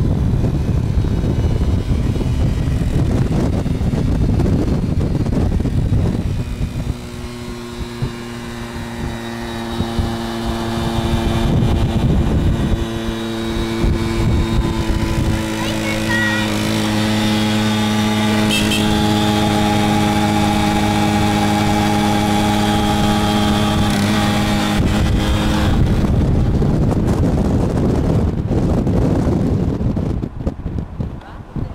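Wind buffeting the microphone, then a small two-stroke moped engine running at a steady pitch for about twenty seconds, rising slightly early on and holding even, before wind noise takes over again near the end. A passenger's short yells come through over the engine about halfway.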